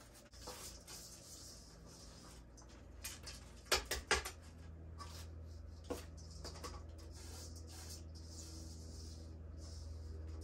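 Damp potting mix rustling and scraping as it is packed and poured into small plastic plant pots from a metal mixing bowl, with a few sharp knocks about four seconds in as the bowl and pots are handled.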